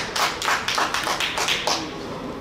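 Hand clapping, a steady run of about three to four claps a second that stops near the end, applause as the players celebrate a goal.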